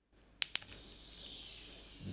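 Two sharp clicks about half a second in as the battery lead is connected, then a faint, steady fizzing of hydrogen and oxygen bubbles streaming off the electrodes of an electrolysis cell in acidified water.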